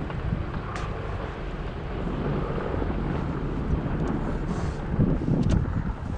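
A vehicle driving slowly, with a steady low rumble of engine and tyres and wind buffeting the microphone.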